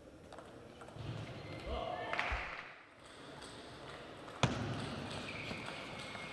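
Table tennis match sounds: around two seconds in, short high squeaks like shoe soles on the court floor, with a couple of low thumps. About four and a half seconds in comes one sharp click of the ball.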